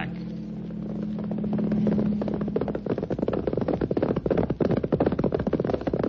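Radio drama sound effects: a steady aircraft engine drone holds for the first few seconds and fades, giving way about halfway through to the rapid clatter of galloping horse hoofbeats.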